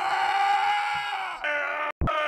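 A man wailing in anguish: one long, held cry, then a shorter one that cuts off abruptly just before the end.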